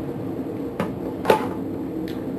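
Two short sharp clicks about half a second apart from a plastic action figure being handled, its leg joints being moved, over a steady low hum.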